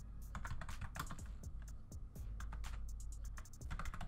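Typing on a computer keyboard: a run of quick, uneven key clicks, over a steady low hum.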